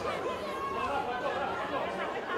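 Crowd of spectators chattering, many voices overlapping with no single voice standing out.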